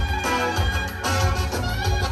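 Live Albanian folk dance music: a clarinet plays the melody over keyboard accompaniment with a steady pulsing bass beat.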